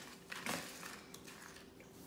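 Folded paper slips rustling and crinkling as a hand rummages in a disposable bowl and draws one out, loudest briefly about half a second in, then faint handling.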